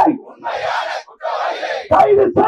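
A crowd of protesters shouting a slogan back in unison, two short group responses about half a second each, between the amplified calls of a man leading the chant on a microphone.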